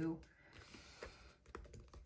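Faint scattered clicks and light paper rustle of hands handling an open pocket Moleskine planner, pressing its pages flat.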